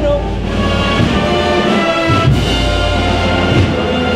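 A Spanish brass band playing a processional march: sustained brass chords with a few low drum beats.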